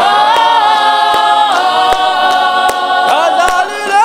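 Mixed a cappella clap-and-tap gospel choir singing held chords, kept in time by steady hand claps about two or three a second.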